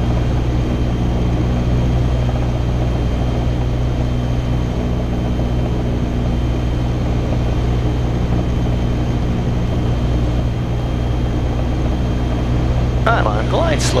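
Cessna 177 Cardinal's single piston engine and propeller droning steadily inside the cabin on final approach, an even low hum with no change in pitch.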